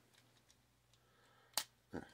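Near silence broken by a single sharp plastic click about one and a half seconds in, with a softer knock near the end, as parts of a Transformers action figure are moved during its transformation.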